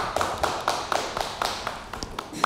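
A small audience applauding: the separate claps of a few people come through distinctly, several a second, over a steady patter.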